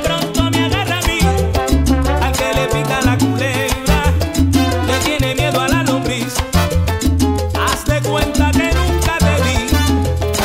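Salsa music played by a band, with a rhythmic bass line, dense percussion and melodic lines above.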